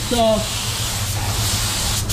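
Automotive paint spray gun spraying base coat: a steady hiss of compressed air and atomised paint, over a low steady hum.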